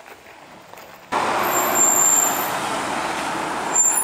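City bus and street traffic, cutting in suddenly about a second in after a quiet start, with a thin high whine twice, near the middle and near the end.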